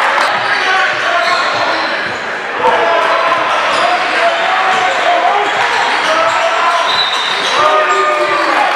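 Live basketball game sound: a basketball bouncing on the gym floor amid many overlapping voices of players and spectators, echoing in a large hall.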